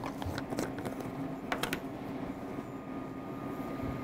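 A few light clicks and taps of a spice jar and measuring spoon being handled in the first couple of seconds, over a steady low hum.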